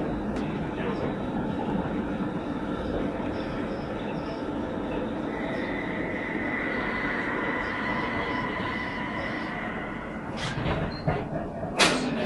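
Tram running along street track, heard from the driver's cab: a steady rumble, with a steady high-pitched wheel squeal for about five seconds in the middle as it passes over track that curves and branches. Two sharp knocks come near the end.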